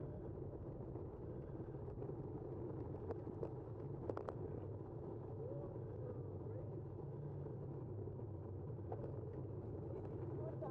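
Steady wind rush on the microphone and tyre noise from a road bike rolling down a paved road. A few sharp ticks and clicks come about three to four seconds in and again near the end.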